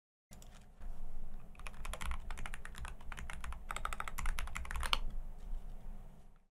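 Typing on a computer keyboard: two quick runs of rapid keystrokes, the second a little after the middle.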